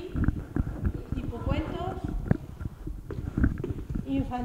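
Handling noise from a handheld camera being carried and tilted along bookshelves: a dense run of low knocks and rumble. A voice speaks briefly about a second and a half in.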